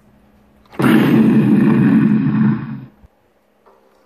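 A loud burst of noise about two seconds long. It starts suddenly about a second in and fades out near the three-second mark.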